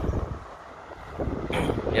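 Wind buffeting the microphone outdoors, a steady low rumble that eases off in the middle and builds again.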